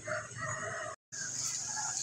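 A rooster crowing, the call broken off by a brief dropout about a second in.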